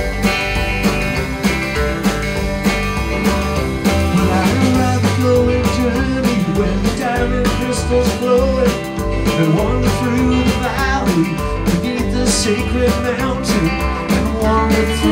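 Live country-rock band playing: electric guitars over a steady drumbeat, with a man's voice singing the first verse from about four seconds in.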